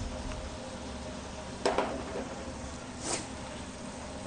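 Frying pan of noodles in cream sauce being tossed on a gas stove over a steady kitchen hum. A sharp metal clank of the pan comes about one and a half seconds in, and a shorter swish near three seconds.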